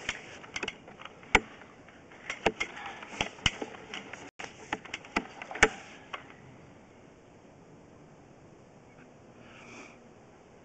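Sharp, irregular clicks and knocks as a sewer inspection camera's push cable is fed by hand down the line, for about six seconds. Then the clicking stops, leaving a faint steady hiss.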